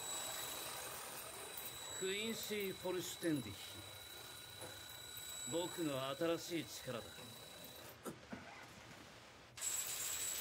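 Anime episode soundtrack: a man's voice speaking Japanese in two short lines, about two and six seconds in, over a faint steady high hum and a low background haze. The hum stops about eight seconds in and the track drops briefly quiet before rising again near the end.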